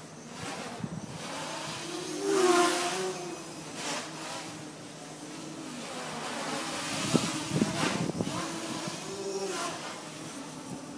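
Armattan 290 quadcopter's motors and propellers whining, the pitch rising and falling with throttle changes during acrobatic flight, loudest in a burst of throttle about two and a half seconds in. A few sharp crackles come about seven to eight seconds in.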